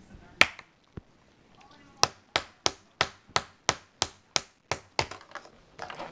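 Hard plastic surprise-egg toy capsule knocked against a table: one sharp knock, then after a pause a steady run of about ten sharp knocks, about three a second.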